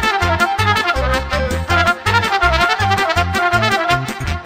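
Trumpet playing a fast Moldovan folk dance tune in quick runs of notes, over a backing band with a steady, fast bass beat.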